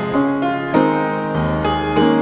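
Piano playing a slow, gentle song, with a new chord struck about every half second.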